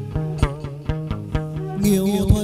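Instrumental chầu văn music: separate plucked string notes over a steady low sustained tone, with a bright, shimmering high sound coming in near the end.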